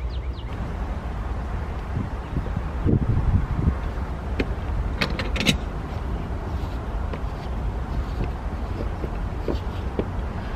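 A frost-free sillcock being unscrewed from a house wall with Channellock pliers. There are a few dull knocks about three seconds in and several sharp clicks around the middle, over a steady low rumble.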